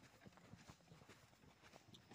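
Faint, irregular footfalls on a sandy dirt track: the hooves of young bulls drawing a bullock cart, along with people walking behind it.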